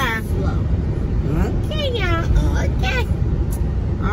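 Steady low road and engine rumble inside the cabin of a moving vehicle, under a woman talking.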